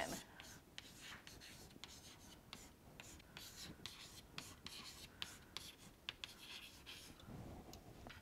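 Near silence with faint, scattered small clicks and scratches, like light handling or writing noise close to the microphone.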